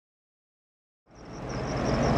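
Silence for about a second, then outdoor roadside sound fades in and grows: a steady low engine rumble.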